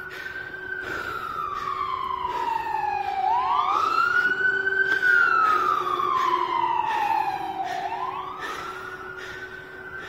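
Ambulance siren on its wail, the pitch slowly rising and falling in cycles of about four to five seconds. It grows louder to a peak about halfway through and fades as the ambulance passes, with a steady lower tone underneath.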